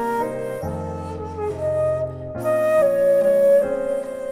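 Daegeum, the Korean transverse bamboo flute, playing a slow melody in long held notes over a backing accompaniment with low bass notes. The melody climbs to its loudest held note a little past halfway.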